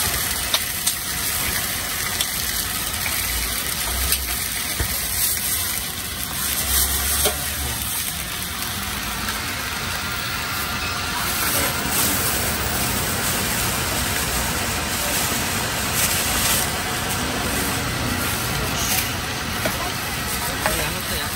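Steady street noise with a low engine-like hum, under faint sizzling of skewers on a flat-top griddle.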